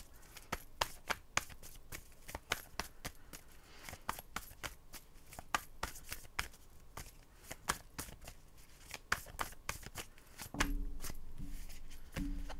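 Tarot deck being shuffled by hand: a quick, irregular run of sharp card clicks, several a second. A low, steady hum comes in near the end.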